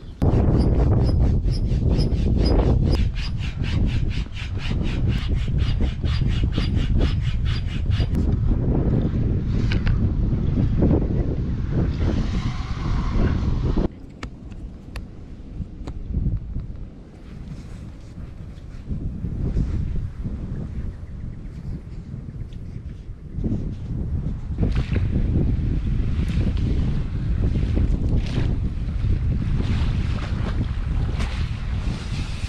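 A pump inflating an inflatable stand-up paddleboard through a hose in its valve, with a fast, even pulsing of about four strokes a second. It stops after about eight seconds, and wind on the microphone and handling noises follow.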